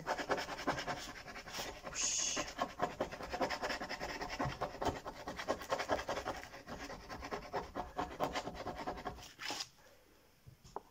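A teaspoon scratching the black top layer off scratch-art paper in many quick, short strokes, stopping just before the end.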